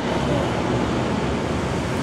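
Steady road traffic noise from cars passing on the street, an even rush with no distinct events.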